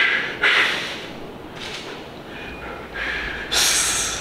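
A few sharp, forceful breaths with no voice in them, the loudest and hissiest near the end, from a bodybuilder straining to hold a most-muscular pose.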